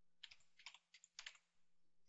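Quiet typing on a computer keyboard: a few short runs of keystrokes in the first second and a half.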